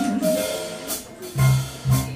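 Live jazz band with a female singer: her held note, with vibrato, ends about half a second in, then the band plays two short accented hits with drums and keyboard.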